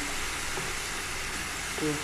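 Chicken fillets frying in hot oil in a pan, a steady sizzle.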